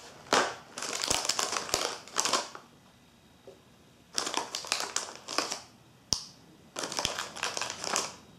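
Plastic inner wrapper of a Meiji Kinoko no Yama snack box crinkling in three bursts while chocolate mushroom snacks are taken out of it, with a few sharp clicks among the crinkles.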